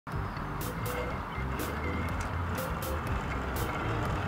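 Zip line trolley running along its steel cable: a steady low rumble that grows stronger about a second and a half in, with a regular music beat of paired sharp strokes about once a second over it.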